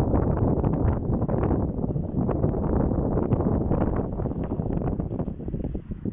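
Wind buffeting the phone's microphone: a loud, gusty rumble that eases slightly near the end.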